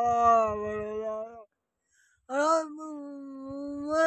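A man's voice chanting a prayer of supplication in long, drawn-out held notes. It breaks off for about a second near the middle, then comes back on a rising note and holds again.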